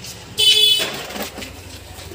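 A short, loud, high-pitched horn-like honk of about half a second, starting a little way in and tailing off over the following half second.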